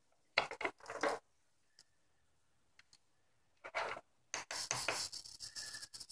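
A few sharp clicks as the servo lead is plugged into the servo tester, then from about four seconds in the faulty Turnigy 555 hobby servo chattering in rapid irregular clicks with a brief faint whine: the servo jittering instead of moving smoothly.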